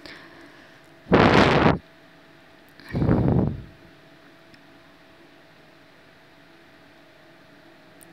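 Two loud scraping strokes of a ladle stirring thick haleem in a steel pot, each under a second long, about a second and three seconds in, over a faint steady hum.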